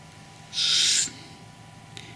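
A person's breath: a single short, breathy hiss of air lasting about half a second.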